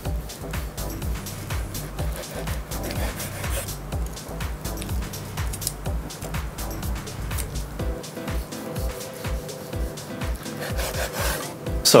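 Chef's knife sawing back and forth through a seared sirloin steak and scraping the wooden cutting board in repeated strokes.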